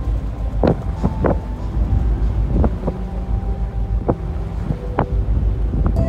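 Wind buffeting the microphone over a steady low engine rumble and water noise, as heard aboard a boat, with a few short sharp sounds at irregular intervals.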